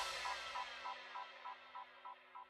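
Closing tail of a half-time dub reggae remix fading out. The last hit's reverb dies away while a short high blip repeats about three times a second, getting fainter, over a low held chord.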